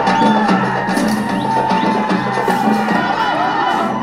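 Festival drumming with a crowd: rapid, dense drum strokes over a low held tone, with a wavering high melody line above.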